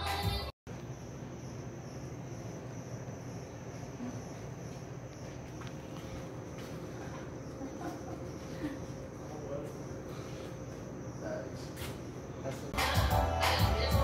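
Music cuts off about half a second in. Quiet room tone follows, with a steady high-pitched whine and a few faint small sounds. Loud music with singing comes back in near the end.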